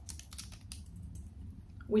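A fabric lanyard and its small metal clip being handled, giving a scatter of light, irregular clicks and taps.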